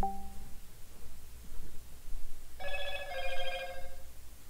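Electronic telephone ringer: a warbling two-tone trill that starts a little over halfway through and keeps going.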